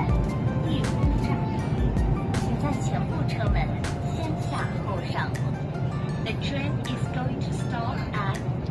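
Steady low rumble inside a moving high-speed train carriage, with voices and music over it.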